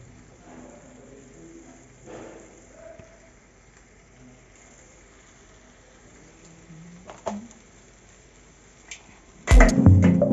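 Quiet kitchen sounds by a gas stove, with a faint clink of cookware about seven seconds in. Near the end, loud electronic music with a beat starts.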